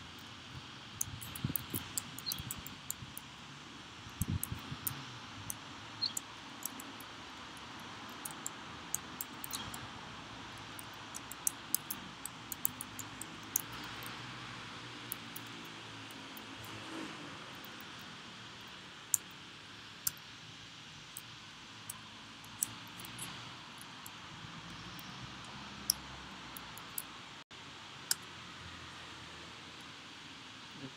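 Typing on a computer keyboard: short key clicks in irregular spurts with pauses between, over a steady faint hiss.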